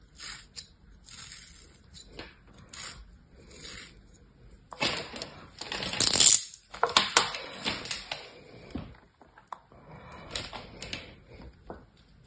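Kinetic sand being sliced with a thin metal blade: short, soft scraping strokes, followed by louder crumbling and rustling of the sand in the middle as it is handled, and a hand pressing into loose sand near the end.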